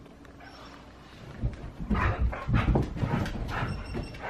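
Siberian huskies starting to play: a run of paw thumps and scrabbling on the couch and floor, beginning about a second in.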